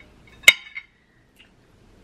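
A knife set down on a serving tray: one sharp metallic clink about half a second in that rings briefly, then a couple of faint ticks.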